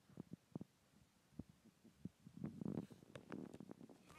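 Faint soft thumps and squishes of fingers poking and pressing a glitter slime with foam beads: a few single pokes early on, then a denser run of squishing in the second half.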